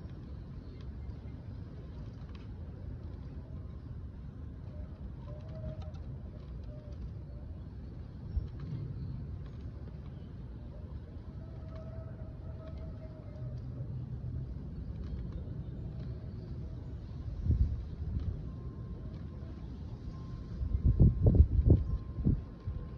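Steady low wind rumble buffeting the microphone, with a few louder gusts about three-quarters of the way in and near the end.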